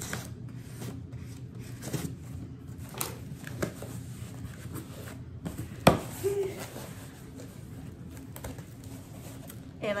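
Cardboard parcel being cut open and unpacked by hand: scattered rustling and scraping of cardboard and packing, with one sharp click about six seconds in, over a low steady hum.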